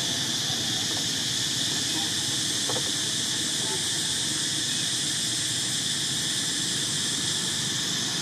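A steady high-pitched drone of insects calling in the trees, with a faint click about three seconds in.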